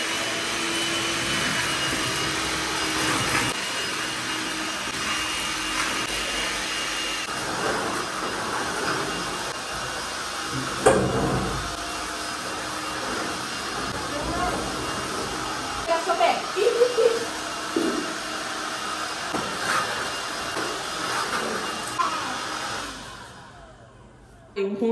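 Cordless Black+Decker stick vacuum running steadily as it picks up dust from the floor, with a sharp knock about eleven seconds in. The motor winds down and stops near the end.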